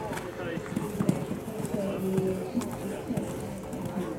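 A showjumping horse landing after a fence and cantering on a sand arena, its hoofbeats heard under voices talking in the background.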